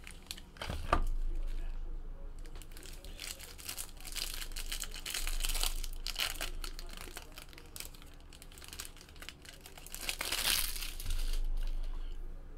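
Cellophane shrink-wrap crinkling and tearing as it is pulled off a small trading-card box, in irregular bursts, loudest about a second in and again near the end.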